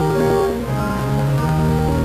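Organ playing slow, held chords that change every half second or so.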